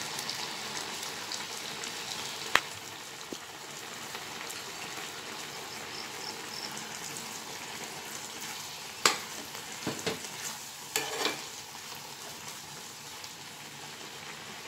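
Vegetable curry simmering and bubbling in a steel pan, a steady sizzling hiss. A ladle clicks against the pan once early and knocks and scrapes it several times from about nine seconds in as the pot is stirred.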